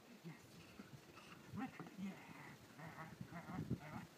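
A dog's short, repeated vocal sounds, a string of brief calls through the second half, while it tugs with its handler, with a short spoken 'yeah' about halfway.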